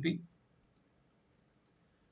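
Faint computer mouse clicks, two in quick succession about half a second in, as a file is picked and opened in a dialog box.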